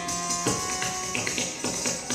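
Kathak footwork with ghungroo ankle bells: a dense jingling with stamped strikes about twice a second, over a steady melodic accompaniment.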